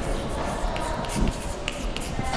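A few short, sharp clicks or taps over steady background hiss.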